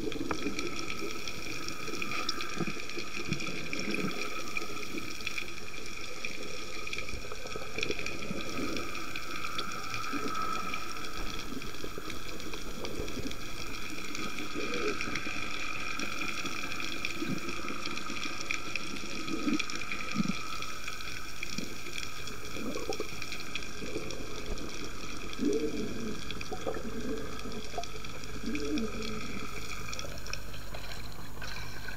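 Underwater sound picked up through a camera housing: a continuous muffled rush of moving water with scattered low knocks and sloshes, over a steady whine of several high tones that holds the whole time.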